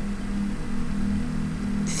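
Steady low hum with a faint even hiss: room background noise between spoken phrases.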